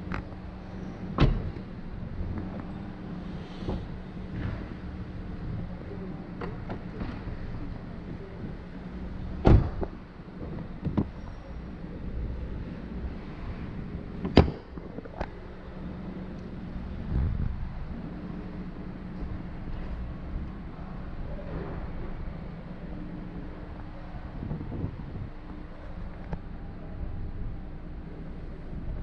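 A few sharp knocks and clunks as the doors, fuel-filler flap and trunk lid of a 2014 Hyundai Sonata are handled, over a steady low hum. The two loudest knocks come about a third of the way in and about halfway through.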